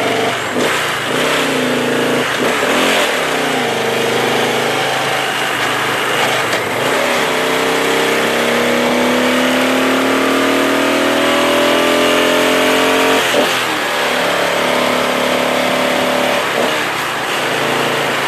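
Motorcycle engine under way, its pitch rising steadily for several seconds as it accelerates, then falling back and running steadier from about thirteen seconds in. Heavy wind rush on the rider's headset microphone runs under it throughout.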